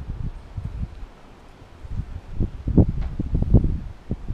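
Wind buffeting the microphone in low, irregular rumbling gusts, growing louder in the second half.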